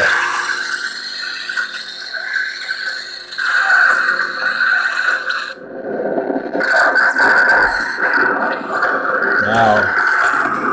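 Lightsaber sound board (CFX) playing its blade-lockup effect through the hilt's small 28 mm speaker: a loud, sustained crackling sizzle over the blade hum, which changes character about halfway through.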